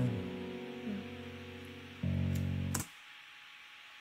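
Steel-string acoustic guitar chord ringing and fading away, then a new chord struck about two seconds in. The music cuts off abruptly with a click just before three seconds, leaving quiet room tone.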